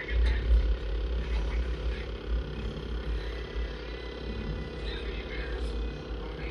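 A low rumble that starts suddenly and is loudest in the first second, over a steady hum, with faint voices in the background.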